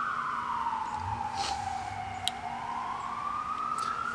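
Emergency vehicle siren in a slow wail, its pitch sliding down and then back up once over about four seconds.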